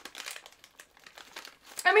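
A snack packet crinkling as it is handled and rummaged for more pieces: a quick, irregular run of small crackles. A voice starts near the end.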